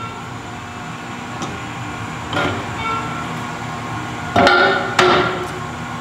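Manual carousel screen-printing press being turned by hand, its metal arms and screen frames knocking. There are a few light knocks, then two sharp ringing metal clanks about half a second apart near the end, over a steady shop hum.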